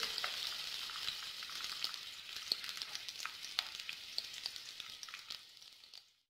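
Sliced onions frying in hot oil in a karahi: a steady sizzle with scattered pops, fading gradually and cutting off suddenly just before the end.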